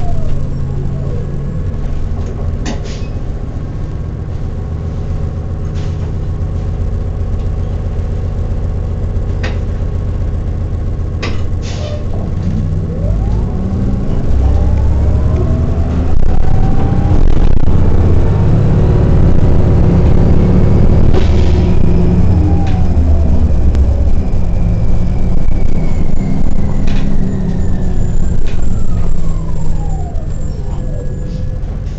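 Interior of an Orion VII city bus under way: a steady low drivetrain rumble. Over the second half a whine rises in pitch and then falls back, as the bus pulls away and slows again, and it gets louder about halfway through. A few brief rattles are heard along the way.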